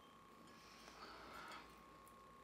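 Near silence: room tone with a faint steady high hum, and a faint brief rustle about a second in.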